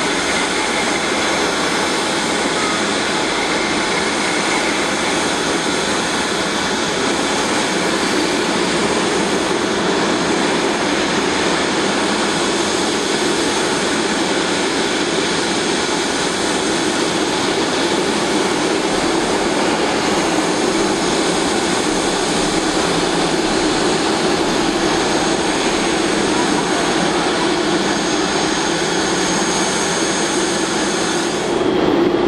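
General Electric GEnx-2B67 turbofans of a Boeing 747-8 freighter running at idle while the aircraft is under tow: a loud, steady jet engine rush with a thin high whine on top, unchanging throughout.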